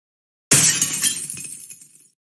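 Glass shattering crash sound effect: a camera on its tripod kicked over and smashed. It starts suddenly about half a second in and fades out over about a second and a half.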